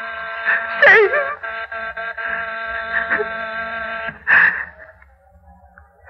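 An electric doorbell buzzer sound effect from an old radio broadcast, buzzing steadily for about four seconds and then cutting off. A woman's whimpering moan rises over it about a second in.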